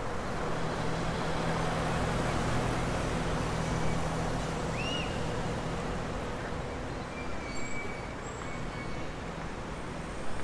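Road traffic on a busy city street: a steady wash of passing cars, with a heavier vehicle's low engine hum building early and fading out after about six seconds.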